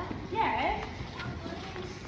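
Distant voices in a large echoing hall, over a low steady rumble.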